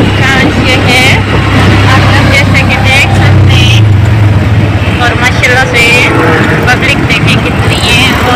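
Auto-rickshaw engine running with a steady low drone while riding in traffic, swelling briefly about three and a half seconds in. Indistinct voices are heard over it.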